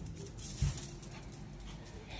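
A small dog's paws tapping on a wooden floor as it walks, with a soft thump about half a second in.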